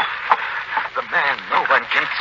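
Dialogue from a 1940s radio drama recording: voices speaking, broken by short pauses.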